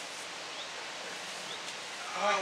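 Outdoor garden ambience: a steady, even background hiss with a few faint, short high chirps.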